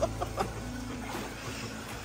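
A short burst of staccato laughter at the start, over background music with a steady low bass line.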